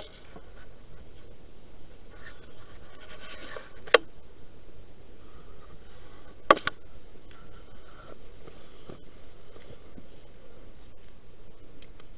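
Faint scratching and rubbing right at the microphone, typical of a handheld camera and clothing being handled, with two sharp clicks about four and six and a half seconds in.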